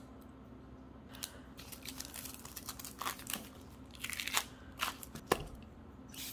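Small aluminium aerosol cans of Avène thermal spring water being handled: irregular clicks, crinkles and rubbing, with the plastic cap coming off one can, ending in a sharp click about five seconds in.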